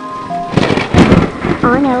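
A thunderclap sound effect with a hiss of rain cuts in over soft music about half a second in and is loudest about a second in. A wavering cartoon-voice 'oh-oh-oh' begins near the end.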